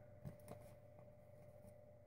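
Near silence, with a few faint soft clicks of a tarot deck being handled in the hands, over a faint steady hum.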